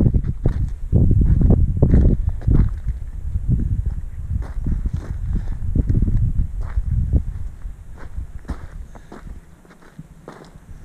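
Footsteps on stony ground, about two a second, with wind buffeting the microphone; both fade near the end.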